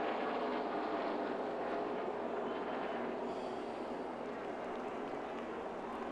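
Steady drone of NASCAR stock car V8 engines running around the track, heard as a continuous background rumble with no sudden sounds.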